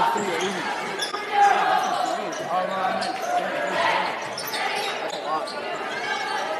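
A basketball bouncing on a hardwood gym floor during play, under continuous crowd chatter, all echoing in a large gymnasium.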